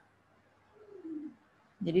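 Faint single cooing call falling in pitch, heard about a second in during a pause, with near silence around it; a woman's voice begins just before the end.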